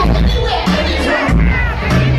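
Hip-hop beat with heavy bass pounding through a concert PA, with a crowd shouting and cheering along and rap vocals on the microphones, heard from within the audience.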